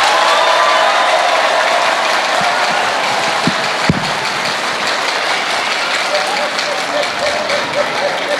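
A seated audience applauding, with cheering voices over the clapping and two dull knocks about halfway through.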